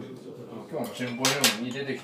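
Chopsticks and tableware clicking on a table: two sharp clicks close together about a second and a half in, the second the louder.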